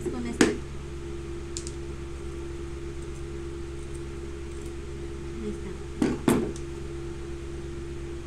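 Electric pedestal fan running with a steady hum, and sharp clicks of scissors being worked at fabric-covered cardboard: one about half a second in and two in quick succession around six seconds.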